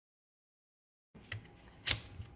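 A knife cutting into an overripe cucumber: dead silence for about a second, then a light click and a single sharp cut near the end.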